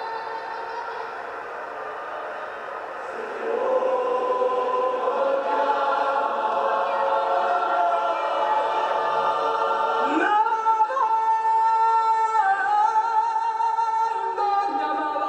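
Large choir singing long held chords, swelling louder a few seconds in. About ten seconds in, a solo male voice slides sharply upward into a long high held note over the choir.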